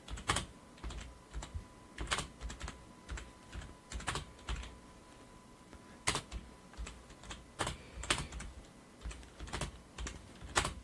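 Typing on a computer keyboard: irregular keystrokes, some single and some in quick clusters, with short pauses between.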